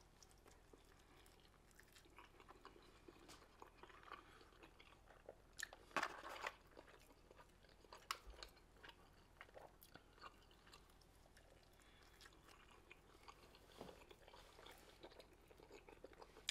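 A man chewing a mouthful of a breakfast chopped cheese sandwich on a soft potato roll, close to the microphone. The chewing is faint and wet, with scattered louder smacks and clicks, the loudest about six seconds in.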